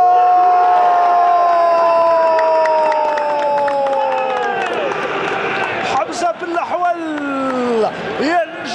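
A football commentator's long, drawn-out goal shout, one loud held call slowly falling in pitch over about five seconds, followed near the end by a shorter falling call.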